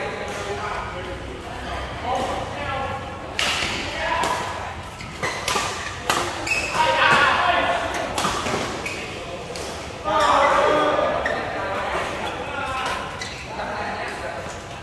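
Badminton rackets striking a shuttlecock in a doubles rally: a few sharp, echoing hits, under players' voices and calls, which are the loudest sound, in a large hall.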